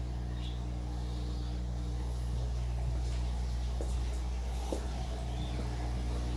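A steady low machine hum with several even tones, coming in abruptly at the start, with two faint knocks about four and five seconds in.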